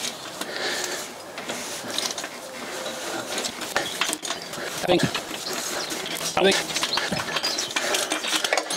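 Hand tools clinking and clicking against metal in the engine bay of a Rover 4.6 V8 as it is turned over by hand, a check for clunky noises after refitting the valve rockers.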